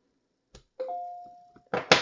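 A chime of two notes sounding together, held for about a second and fading away, after a small click. Near the end comes a short, loud scuffing noise.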